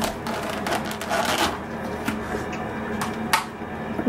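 Plastic food packaging crinkling and clicking as lunch-meat packets and a clear plastic deli tub are handled, with a louder rustle just over a second in and a few sharp clicks in the second half.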